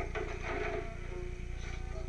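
Steady low electrical buzz and hum from a television's speaker, with faint background music holding a few soft notes.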